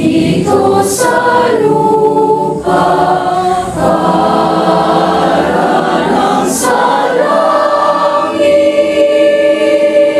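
Mixed choir of teenage boys and girls singing in harmony, ending on a long held chord over the last couple of seconds.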